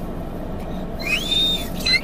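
A toddler's brief high-pitched squeal, rising and then falling, about a second in, with a short higher squeak near the end, over a steady low hum.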